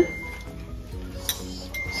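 Quiet background music with held notes, with a couple of light clinks of metal tongs against a stainless steel pot.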